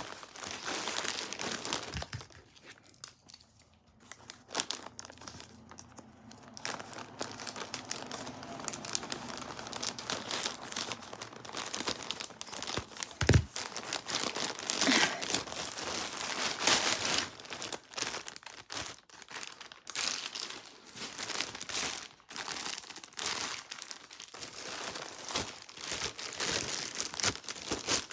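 Plastic packaging bag crinkling and rustling as it is handled and opened, with a single sharp knock about halfway through.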